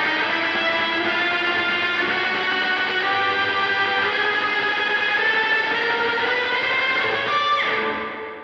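Electric guitar with overdrive playing sustained octaves, a fairly clean ornament part whose held notes climb gradually in pitch. Near the end the pitch slides down and the notes ring out and fade.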